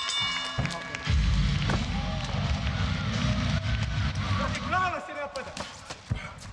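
Cage-side arena sound after a knockout: music with a heavy bass swelling in about a second in, and shouting voices over it.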